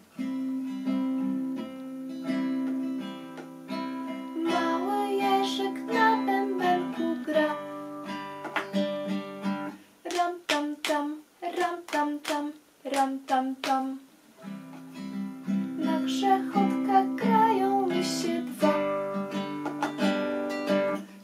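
Nylon-string classical guitar strummed as a steady chord accompaniment, with a woman singing over it. About ten seconds in, the chords stop for a few seconds of sharp, rhythmic taps, then the strumming resumes.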